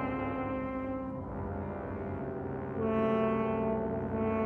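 Wind ensemble playing low, held chords in which brass stands out. The sound eases after about a second, and a louder new chord comes in near the end.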